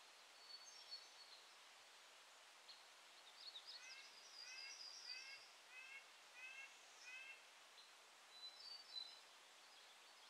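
Faint, distant woodland birdsong: one bird repeating a series of about six short rising notes midway through, with thin, high twittering from other birds before and near the end.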